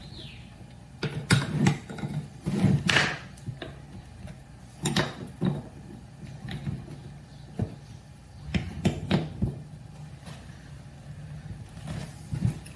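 Small walnut blocks being set down and shifted by hand on a wooden workbench: scattered wooden knocks and taps, several in quick succession between about one and three seconds in and again near the middle and later on.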